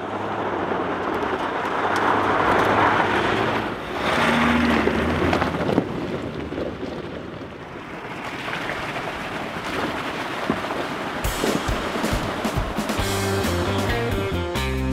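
A pickup truck driving off-road, its tyres on loose gravel and then through water, with music under it. Electric-guitar rock music comes in strongly about eleven seconds in.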